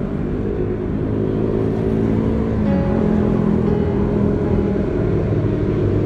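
Traffic on the nearby road: a heavy vehicle's engine running, a steady low drone whose pitch drops a step a little before the middle.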